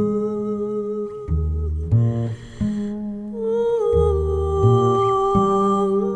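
Wordless female humming that holds long, steady notes over low double bass notes changing about every second. There is a short dip in the middle before the voice moves to a slightly higher note.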